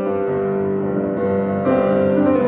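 Yamaha grand piano being played in an improvisation: chords ring on with new notes entering beneath them, and a fresh, louder chord is struck near the end.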